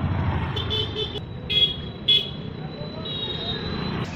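Street traffic: a motorbike or scooter running close by, with about four short, high horn toots.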